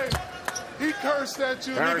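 Basketball bouncing on a hardwood court, a couple of sharp bounces in the first half second, amid voices on the floor.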